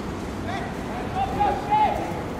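High-pitched shouted calls from people on a football pitch, starting about half a second in, over a steady outdoor background noise.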